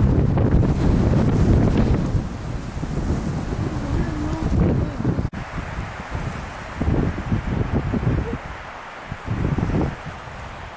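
Wind buffeting the camera microphone: a low, uneven rumble, strongest in the first couple of seconds and coming back in gusts later on.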